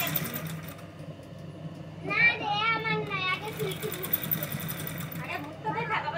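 Electric sewing machine running steadily as it stitches the embroidered patch onto the blouse neck, with a low motor hum. About two seconds in, a child's high voice calls out loudly for a second or so, and talking starts again near the end.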